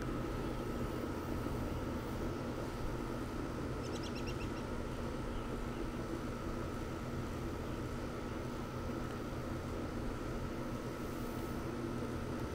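Steady low hum of an outdoor air-conditioning condenser unit running, with a brief run of rapid high chirps about four seconds in.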